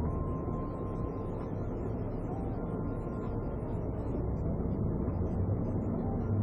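Steady engine and road noise inside a police patrol car's cabin, a low even rumble.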